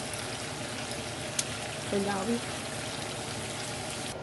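Pork chops frying in hot oil in a skillet, a steady sizzle, with one sharp click about a second and a half in.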